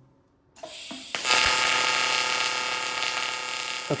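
TIG welding arc on aluminum, striking with a click about a second in, then buzzing steadily with a hiss until just before the end.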